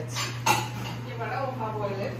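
Tableware clinking: two sharp knocks, one right at the start and one about half a second in, followed by people talking in the background.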